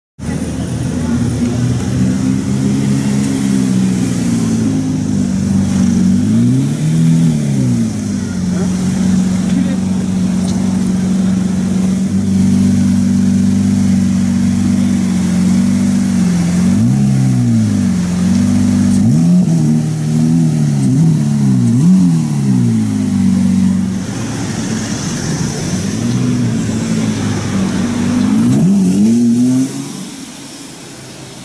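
Lamborghini Reventón's V12 idling steadily, blipped several times with quick rises and falls in pitch, a cluster of revs about two-thirds through and one more near the end.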